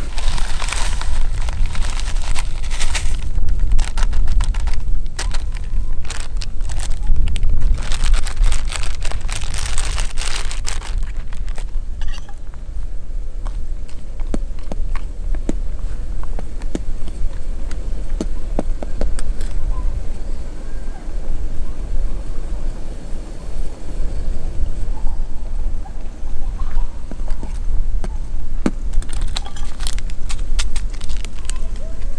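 Wind buffeting the microphone, a heavy low rumble that rises and falls in gusts. Over it, for about the first ten seconds, dense rustling and crackling as food packaging is handled, then only occasional light clinks of a spoon stirring in a metal camping pot.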